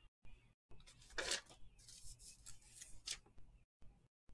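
Faint rubbing and scraping, loudest just after a second in, with another short scrape near three seconds.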